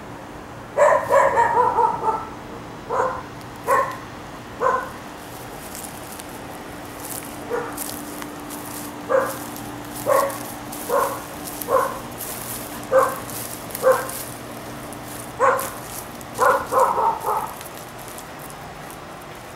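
A dog barking repeatedly: single barks about a second apart, with quick runs of barks about a second in and near the end, over a faint steady hum.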